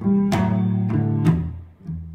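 Electric guitar through a small amp and acoustic guitar playing a blues fill between sung lines: a handful of plucked notes that die away briefly near the end.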